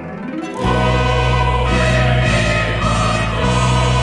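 Choral oratorio music: after a brief quieter moment, a choir and accompanying ensemble come in about half a second in with a loud, full sustained chord over a strong bass. The chord shifts a couple of times as it is held.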